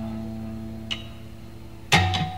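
Acoustic guitar playing live: a strummed chord rings on and fades away, a single soft note sounds about a second in, and a hard new strum comes in at the very end.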